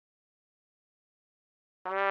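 Silence, then near the end a single low trumpet note starts abruptly and is held steady.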